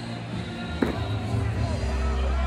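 Arena background: music and distant voices over a steady low hum, with one sharp knock a little under a second in.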